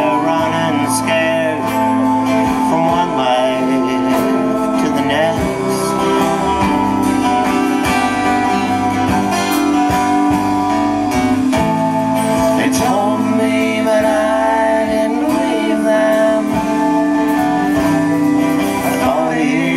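A live band playing a song with acoustic and electric guitars, bass, keyboards and drums, strummed guitar chords over sustained notes.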